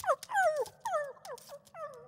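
A puppy whimpering: about five short whines in a row, each sliding down in pitch.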